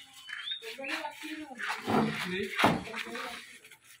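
Indistinct voices and goats bleating as the goats are led on ropes, with a sharp knock about two and a half seconds in.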